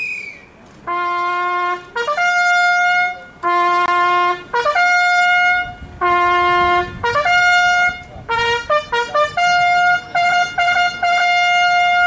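A solo trumpet playing a slow ceremonial call: long held notes that alternate between a low note and the note an octave above, then a quick run of short notes, ending on a high note held for about three seconds.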